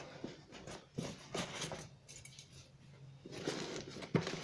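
Packing material being handled in a cardboard box: plastic film over a foam-packed parcel crinkling and rustling, with scattered small clicks. The sound is quieter in the middle and louder again near the end.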